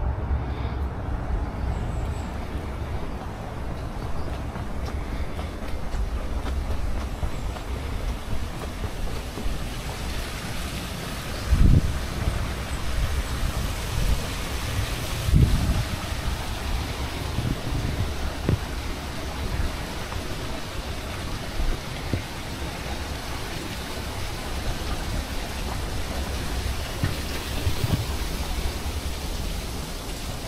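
Wind noise on an outdoor microphone: a steady low rumble with hiss above it. A few louder low thumps come through about twelve and fifteen seconds in.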